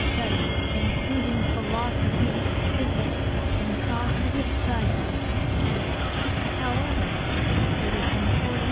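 Dense layered noise collage of several recordings playing at once: a steady, thick wash of noise with short pitch glides and buried voice-like sounds running through it.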